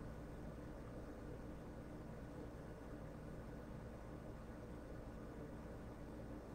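Faint room tone: a steady low hiss with a soft low hum and no distinct events.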